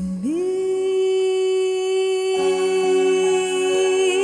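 A singer holds one long note in a cover song, scooping up into it at the start and adding vibrato near the end, with instrumental backing coming in about halfway through.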